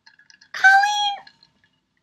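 A woman's short, high-pitched squeal, held on one note for just over half a second, in a burst of excited laughter.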